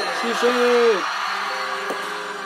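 Live pop concert music playing, with a man's voice holding a short note that drops in pitch about a second in. Steady sustained chords follow.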